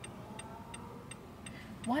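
Car turn-signal indicator ticking steadily inside the cabin, just under three light clicks a second.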